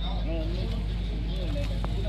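People talking in the background over a steady low engine-like hum.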